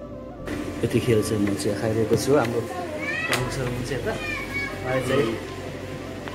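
People talking: voices in conversation, with one high, rising voice about three seconds in.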